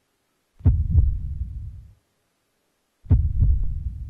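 Deep low thuds in a heartbeat-like pattern: a double beat about half a second in and a triple beat about three seconds in, each ringing out for about a second before silence.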